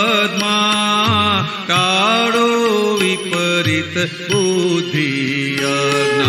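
Gujarati devotional song (pad): a singer's melodic line with wavering, gliding pitch over a steady drone and instrumental accompaniment, with a low beat about every two and a half seconds.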